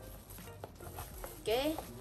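A cardboard box being opened by hand: faint scraping and a few light taps as the lid and inner tray are handled, with a short spoken word near the end.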